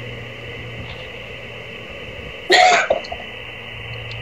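Steady hiss of a ham radio receiver on an open frequency while listening for a reply after a CQ call, with one brief cough about two and a half seconds in.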